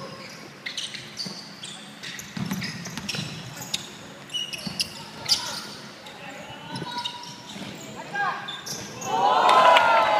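Basketball game on an indoor hardwood court: the ball bouncing and sneakers squeaking briefly on the floor, with the players' voices and a loud burst of voices near the end.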